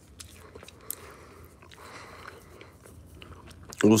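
Faint, scattered small clicks and ticks close to the phone's microphone over quiet room noise; a man's voice says "What's up?" at the very end.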